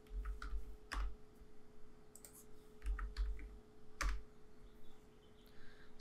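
Keystrokes on a computer keyboard, typing a short number into a value field, in a few small clusters of clicks with pauses between. A faint steady hum runs underneath.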